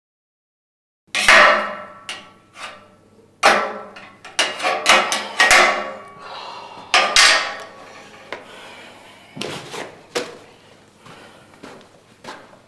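A metal bar banging on metal: a dozen or so sharp, irregular clanks with a ringing tail, starting about a second in, coming thickest in the middle and thinning out toward the end.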